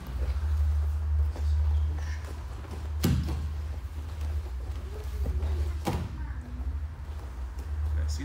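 Two people in gis grappling on a mat: scuffling and two sharp thuds, about three and six seconds in, over a steady low hum.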